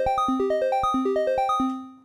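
Critter & Guitari 201 Pocket Piano playing its factory arpeggiator pattern four: a fast up arpeggio strumming upward through the held notes across two octaves, over a repeating low note. It stops shortly before the end as the keys are let go.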